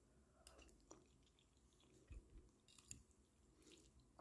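Near silence with faint chewing, a few soft mouth and fork clicks, while someone eats a bite of omelet.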